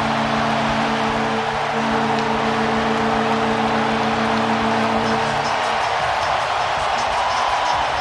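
Hockey arena goal horn blaring a steady multi-tone chord for a home-team goal, cutting off about five and a half seconds in, over a cheering crowd that carries on.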